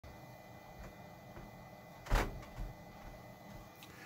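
A brief knock about two seconds in, with a smaller one shortly after, over quiet room tone with a faint steady whine.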